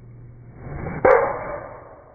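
Full-speed golf driver swing: a rising swoosh of the club through the air, then a single sharp crack as the driver face strikes the ball about a second in, fading out afterward.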